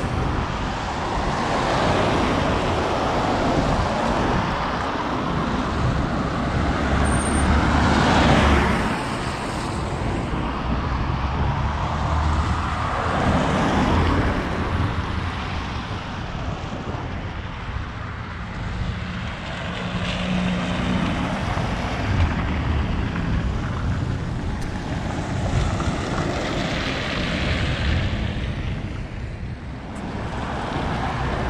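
Road traffic on wet streets: cars passing with a tyre hiss that swells and fades several times over a steady low rumble.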